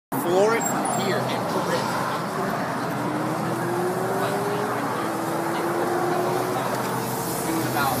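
Audi sedan engines running at low speed as the cars creep past close by. The engine note rises slowly in pitch twice over a steady background of traffic noise.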